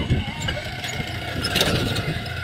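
Small motorcycle engine running close by, from a roofed motor tricycle passing: a steady, uneven low rumble.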